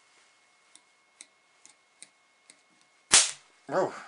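A few faint clicks, then about three seconds in a single loud, sharp crack of a spark as a screwdriver shorts two 200 V 1000 µF electrolytic capacitors charged to about 320 volts. The size of the bang shows they held plenty of charge.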